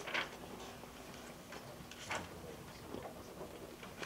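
Papers being handled and shuffled on a table in a quiet room: a few soft, irregular rustles and clicks, the clearest just after the start and about two seconds in.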